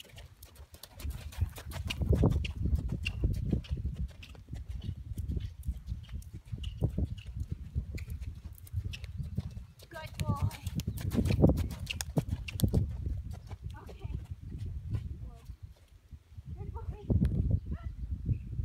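Hoofbeats of a horse cantering on a longe line over sand footing. A person's voice comes in at times, most near the end.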